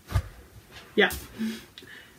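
A short, dull handling thump just after the start, as a stitching project or paper sheet is moved about. A woman says 'yeah' about a second in.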